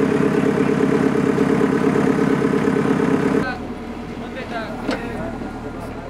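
JCB backhoe loader's diesel engine running steadily close by; about three and a half seconds in it drops away suddenly, leaving quieter background noise with faint voices.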